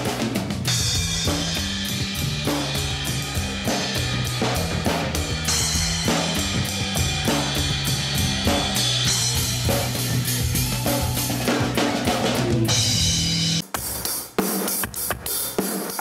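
Hybrid drum kit played fast with sticks, snare, toms and cymbals over a low bass drum whose sound comes from a subwoofer inside the shell, triggered from hand pads. A held low bass line runs underneath. The playing stops abruptly about thirteen and a half seconds in, followed by a few scattered drum hits.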